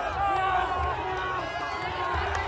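Close crowd of football supporters shouting and cheering together in celebration of a goal, many voices overlapping without a break, with a low rumble underneath.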